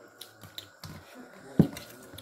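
A steel bowl set down with a single sharp knock onto a surface about one and a half seconds in, the loudest sound, after a few small clicks and taps of eating by hand.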